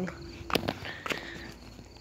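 Faint outdoor background with a few soft clicks and a brief faint high tone about halfway through.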